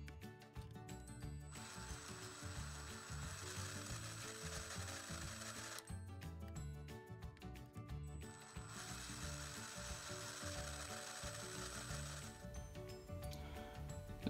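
Small electric drill with a fine twist bit drilling out the rivets in a diecast toy bus's metal base, running in two stretches of a few seconds each with a thin high whine. Background music plays underneath.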